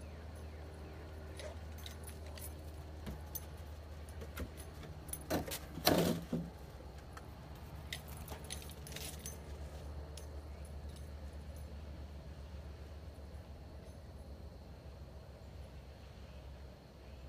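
Small metal pieces jingling and clinking in short bursts, loudest about six seconds in, over a steady low hum.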